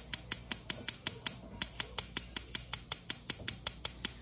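Gas cooktop spark igniter clicking in a steady, rapid series, about six clicks a second.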